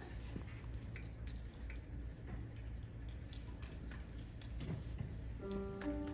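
A low steady hum with scattered small clicks and rustles in a waiting hall, then a piano begins its accompaniment with held notes near the end.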